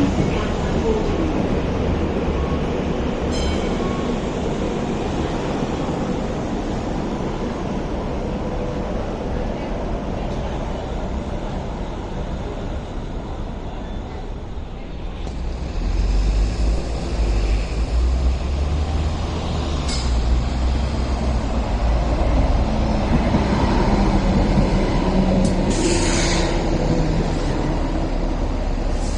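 Hong Kong Light Rail trains: one light rail vehicle running away from the stop, its rumble easing off, then a two-car train approaching and drawing into the platform with a heavier low rumble that builds from about halfway through. There are short bursts of hiss twice during its arrival.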